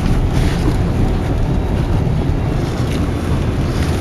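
Steady road and engine noise inside a moving car's cabin, a low, even rumble.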